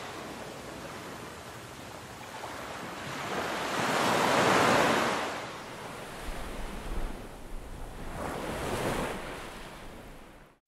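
Ocean surf: waves washing in and drawing back, swelling loudest about four seconds in and again near the end, then fading out.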